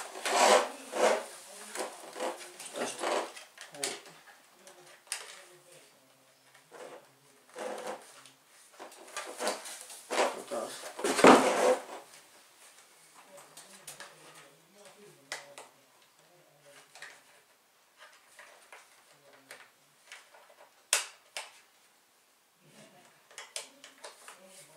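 Plastic parts of a cordless stick vacuum cleaner being handled, pulled apart and clicked together, with scattered clicks and a louder knock about eleven seconds in; the vacuum's motor is not running.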